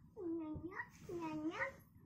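Two short, high vocal calls one after the other, each dipping and then rising in pitch.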